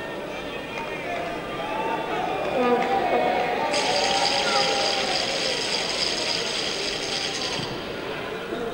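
Voices shouting and calling in a football stadium during play, with a steady high-pitched sound that starts suddenly about four seconds in and cuts off just before the end.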